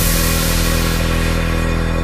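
Electronic dance music mashup in a breakdown: the drums have dropped out, leaving a sustained synth chord, and its treble fades away about a second in.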